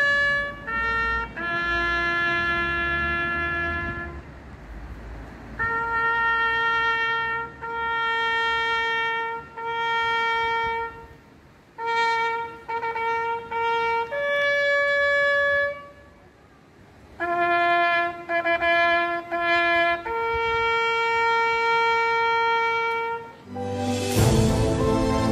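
Solo trumpet sounding a slow military salute call: groups of short pickup notes, each leading into a long held note, in phrases separated by brief pauses.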